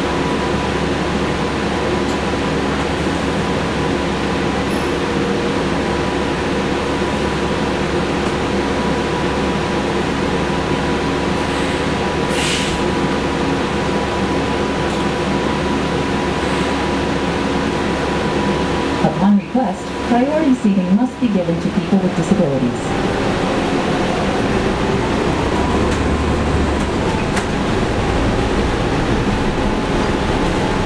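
Cabin noise of a New Flyer XN40 Xcelsior city bus under way, with the steady drone of its Cummins ISL-G inline-six natural-gas engine and a thin steady whine. There is a short hiss about 12 seconds in, and a few seconds of a voice about two-thirds of the way through.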